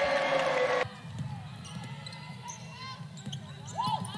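Loud arena crowd noise that cuts off abruptly under a second in, followed by quieter live court sound: a basketball being dribbled on hardwood and sneakers squeaking.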